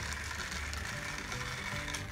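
Background music with low, stepping bass notes, under the small motor of a battery-powered toy car running along a flexible, articulated plastic track.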